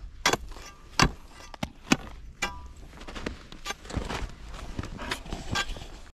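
Ice spud bar jabbing the slushy shoreline ice, a series of irregular sharp strikes, some with a short metallic ring, as the ice is tested and found poor.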